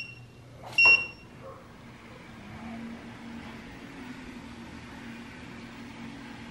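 Best Choice Products treadmill console giving the last beep of its start countdown, a short high beep about a second in. Then the treadmill's motor and belt start up and run with a faint, steady low hum.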